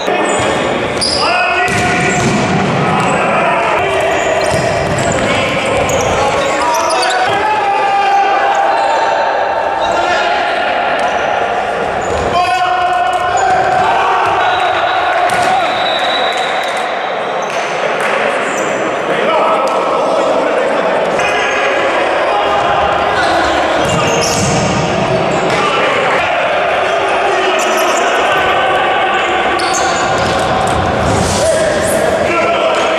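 Futsal being played in a large sports hall: the ball being kicked and bouncing on the court, with players' shouts and calls echoing around the hall.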